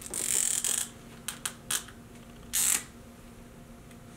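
A dry-erase marker being handled and uncapped at a whiteboard: a short rustle, three light clicks a little over a second in, then a second brief rustle.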